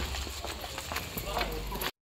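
Footsteps of several people walking on a paved lane, a run of uneven knocks, mixed with indistinct voices and a low rumble; the sound cuts off suddenly just before the end.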